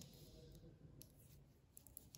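Faint, irregular clicks of metal knitting needles as knit stitches are worked, over a low steady hum.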